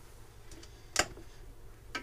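A single sharp click about a second in, with a few faint ticks around it: a thin steel welding-rod flag pole being handled on the workbench and knocking against small hard parts.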